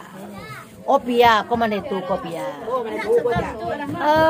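Speech only: people talking and chattering, with one voice rising loudest about a second in.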